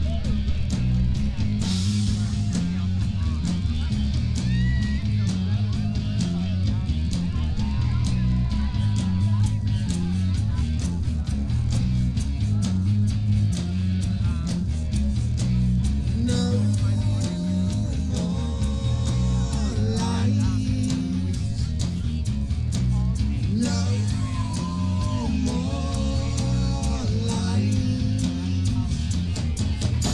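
Live rock band playing through a club PA, heard from the audience: drums and bass guitar make a steady, bass-heavy beat, with electric guitar on top and sustained melodic lines coming in from about halfway.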